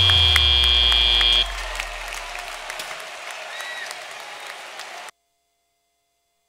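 Robotics-competition end-of-match buzzer: a long steady high tone with a deep tone sliding down beneath it, which stops about one and a half seconds in. Arena crowd cheering and applauding follows, then cuts off suddenly about five seconds in.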